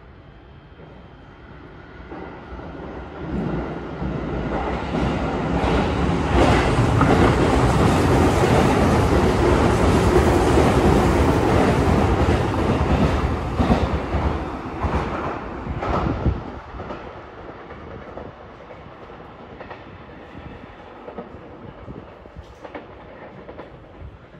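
Electric commuter train passing through the station without stopping. Its rumble builds from about two seconds in and is loudest for several seconds with wheel clatter over the rail joints, then fades after about sixteen seconds.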